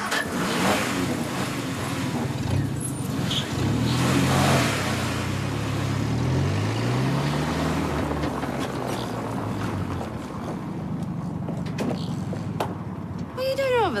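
Car engine revving and accelerating hard, its pitch climbing in several steps as it pulls away through the gears, then running on steadily.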